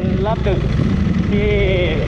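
Ducati V4 superbike's V4 engine running steadily at low revs, a low rumble, as the bike crawls at walking pace through stop-and-go traffic.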